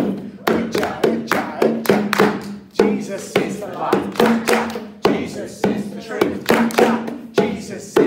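Hand-played bongo drums beating a steady rhythm, about two to three strikes a second, under a congregation singing a simple chanted worship song.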